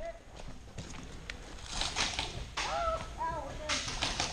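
Faint distant voices of players calling out, with a light click and some brief rustling.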